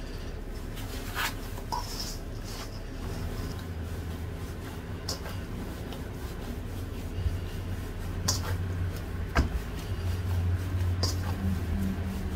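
Hands kneading pastry dough in a stainless steel mixing bowl: soft rubbing and squishing, with a few light clicks and knocks against the bowl, over a low steady hum.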